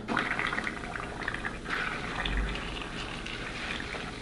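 Styrofoam (polystyrene foam) cups dissolving in acetone in a foil pan: a steady low hiss with small crackles as the foam gives way.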